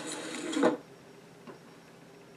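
A voice trailing off at the start, then a quiet room with one faint tap about a second and a half in.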